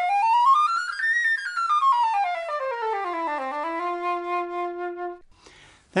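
Concert flute playing an F major scale in quick, even steps: it climbs about two octaves, runs back down past the starting F to a few notes below it, then steps back up to a long held low F that stops about five seconds in.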